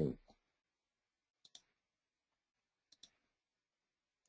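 Two faint computer mouse clicks about a second and a half apart, each a quick double tick, with near silence around them.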